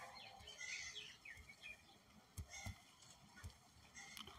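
Near silence: faint room tone with a few faint high chirps in the first half and a few soft clicks.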